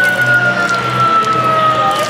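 Fire-engine siren sound effect with music, played from the speaker of a push-button Lego model display: one long tone that slowly falls in pitch over a steady low hum.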